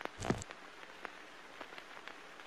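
Faint crackling hiss with scattered light ticks, and one brief louder sound about a quarter second in.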